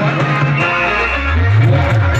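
Loud Timli dance music from a band playing through a big sound system, with a heavy, rhythmic bass line. The bass thins out about half a second in, under a held high note, and comes back with a rising low note near the end.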